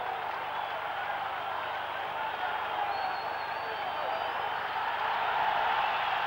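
Football stadium crowd: a steady din of spectators on the terraces, swelling slightly toward the end, with a faint high whistle around the middle.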